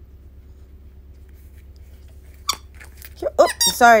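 Rubber dog toy ball squeaking in a few short bursts, with clicks, during the last second and a half after a quiet start.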